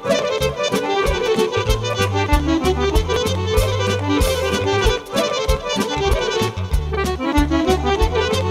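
Folk band music with an accordion playing a fast, busy melody over a steady drum beat and deep bass notes.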